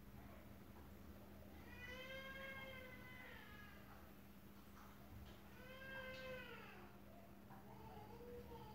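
Two faint, drawn-out calls, one about two seconds in and another near six seconds, each rising and then falling in pitch, over a faint steady low hum.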